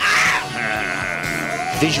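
A long, quivering yell from one voice that starts abruptly and loud and holds until near the end.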